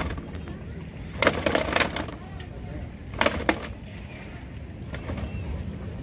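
Live bass flopping in a plastic weigh-in crate on a scale: two short bursts of rattling and splashing, about a second in and about three seconds in, over a low steady background rumble.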